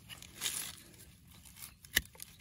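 Rustling and scraping of dry leaves and soil being handled, then one sharp click near the end as hand pruning shears snip a woody stem.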